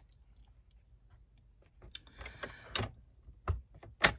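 Faint handling of a sheet of 12x12 cardstock-weight paper on a paper trimmer as it is slid into place for scoring: a light rustle of paper with a few sharp clicks and a soft knock near the end.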